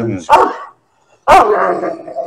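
Large white Turkish shepherd dog barking deep and loud, two barks about a second apart, the second drawn out longer, while it is held back on a leash and confronting another dog.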